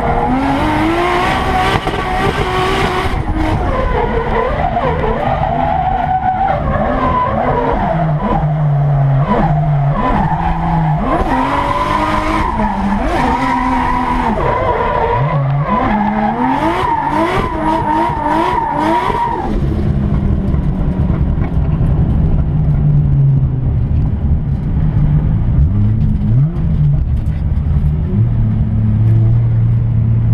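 In-cabin sound of an 800 hp Nissan S15 Silvia drift car being driven hard through a drift: the engine revs up and down again and again, with tyre squeal. About two-thirds of the way through the revving stops and the engine settles to a low, steady rumble as the car slows.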